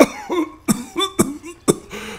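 A man's voice in short, sharp vocal bursts, about four of them roughly half a second apart, each with a brief pitched tail.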